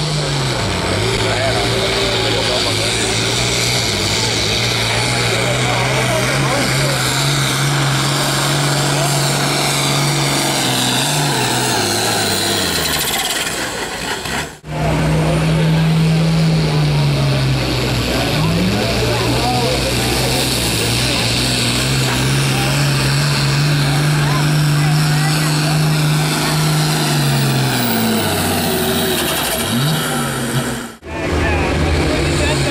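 Two diesel pulling tractors, one after the other, each running hard at high revs under the load of a weight-transfer sled, with a steady engine note. Near the end of each pull the note sags as the load drags the engine down. The second tractor's note dips briefly and recovers a few seconds into its run.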